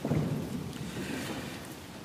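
A congregation sitting down in wooden pews: a rustle and shuffle of bodies, clothing and seats in a reverberant sanctuary, loudest at the start and slowly dying away.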